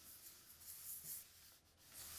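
Faint scratching of a felt-tip marker on paper as an ellipse is drawn, in a couple of short strokes around the middle.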